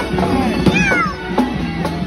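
Music with a beat and a cat's meow in it; one meow falls in pitch about two thirds of a second in.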